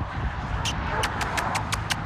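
Steady low outdoor rumble and hiss, with a quick run of about six light, sharp clicks from a little under a second in to near the end.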